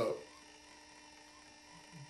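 A pause between a man's words, holding only a faint steady electrical hum and room tone; a spoken word trails off right at the start.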